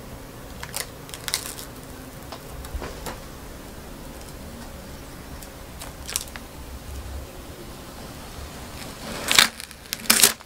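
Protective plastic film being peeled off the front panel of a desktop PC case: faint, scattered crinkling and crackling, with a louder crinkle near the end as the film comes away.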